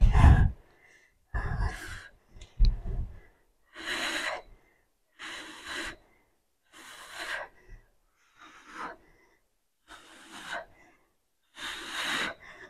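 A woman breathing hard with exertion during a set of dumbbell lunges, one loud breath roughly every second and a half in time with the reps. There are a few low bumps in the first few seconds.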